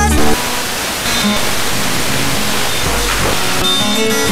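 Wideband FM demodulated by an RTL2832U software-defined radio while it is stepped between broadcast stations. A station's music cuts off shortly in and gives way to the hiss of FM static with faint traces of audio, the sign of being tuned off-station. Near the end another station's music comes in.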